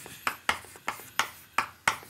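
Chalk striking and stroking a blackboard as symbols are written: about six sharp taps at uneven intervals.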